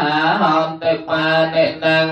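Buddhist monks chanting a Pali blessing together, a continuous recitation held on a few steady pitches with brief breaks between phrases.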